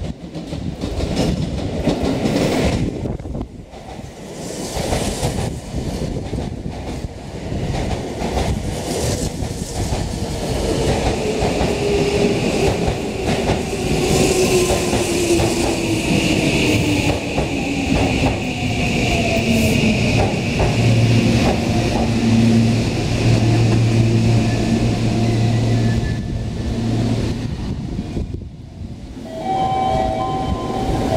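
Seibu commuter electric train pulling into the platform and slowing to a stop, its wheels rumbling on the rails. A whine falls steadily in pitch as it brakes, then gives way to a low steady hum as the train comes to rest.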